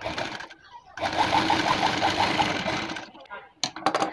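Sewing machine running in a short burst of about two seconds, stitching a seam through fabric with an even, rapid stitch rhythm. A few sharp clicks follow near the end.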